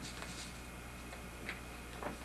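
A few faint, irregular light clicks over a steady low hum.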